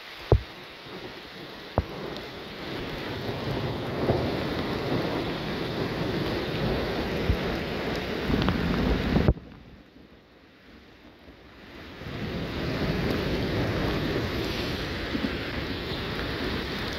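Heavy rain pouring onto a flooded road, with wind rumbling on the microphone. The rushing noise cuts out abruptly about nine seconds in, leaving only faint rain for about three seconds, then comes back. Two sharp clicks sound near the start.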